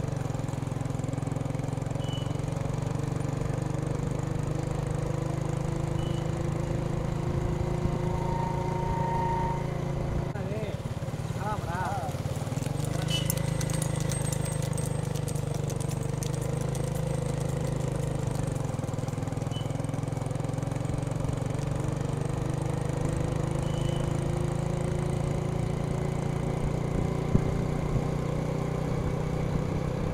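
Several motorcycle engines running steadily at low speed, with slowly shifting pitch, and voices mixed in.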